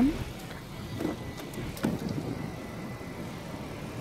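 A car door being opened: two faint clicks about one and two seconds in, from the handle and latch releasing, over low outdoor background noise.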